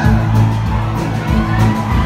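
Rock band playing live: drums, bass and electric guitars in a steady groove, with a bass figure that repeats about every second.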